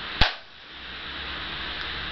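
A single sharp hand clap just after the start, followed by a steady low background hum.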